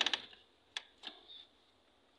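A few short, sharp clicks and taps: a quick run right at the start, a sharp one about three quarters of a second in, and another just after a second.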